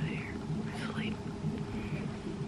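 A woman whispering close to the microphone, over a steady low hum.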